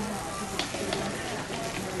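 Steady hiss of store background noise, with faint distant voices.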